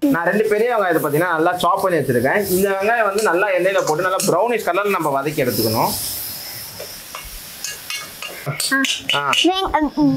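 A person's voice fills the first half. A metal spoon then scrapes and clicks against a steel kadai as food is stirred, with the voice returning briefly near the end.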